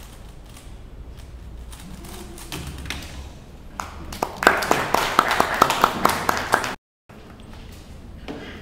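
Faint clicking of a 3x3 speed cube being turned, then, about four seconds in, a loud burst of applause with sharp individual claps, about five a second, that cuts off abruptly after two and a half seconds.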